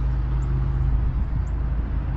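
Steady low rumble of motor-vehicle engine noise, holding one low pitch.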